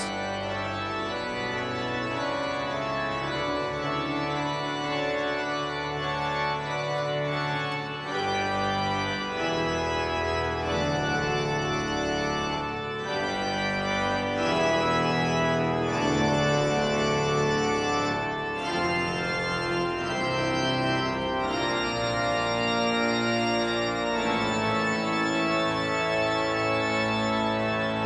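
Pipe organ playing slow, held chords that change every second or two, with no pause.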